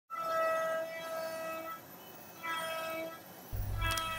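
CNC router's 2.2 kW water-cooled ATC spindle milling a sheet: a steady high-pitched whine with overtones that holds for about a second and a half, falls away for about a second, then sounds again briefly.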